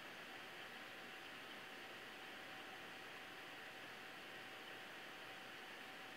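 Faint steady hiss of room tone and recording noise, with a thin steady tone held throughout.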